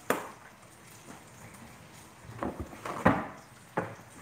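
A sharp knock as a pepper shaker is set down on a countertop, then a few lighter knocks and clatters between about two and a half and four seconds in.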